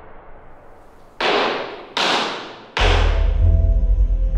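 A wooden gavel struck three times on its sound block, about three-quarters of a second apart, each blow sharp with a long echoing tail. A deep, droning music bed comes in with the third blow.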